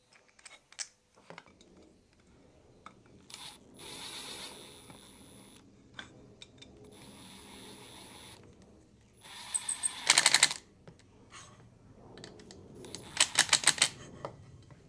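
HiKOKI cordless impact driver driving screws into a wooden block. The motor whirs in short runs, then the impact mechanism hammers in a rapid rattle as the screw seats, once about ten seconds in and again near the end.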